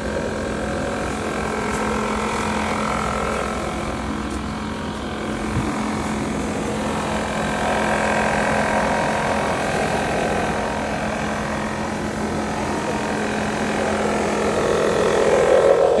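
A leaf blower's motor running steadily at constant speed, a continuous droning hum with no change in pitch.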